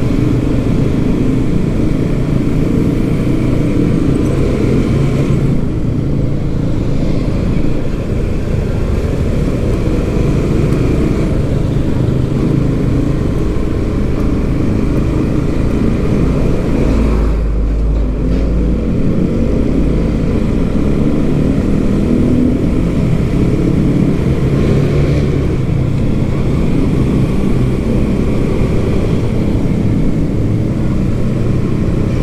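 A motorcycle riding in road traffic: its engine runs steadily under heavy road and wind rumble, with a brief deeper rumble about halfway through.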